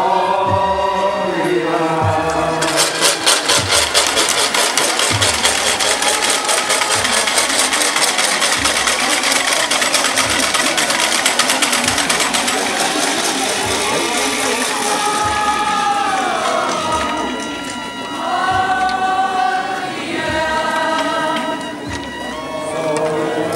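Voices singing a slow, chanted hymn. About three seconds in, a fast, dense rattle sets in over the singing and fades out about halfway through, after which the singing is heard plainly again.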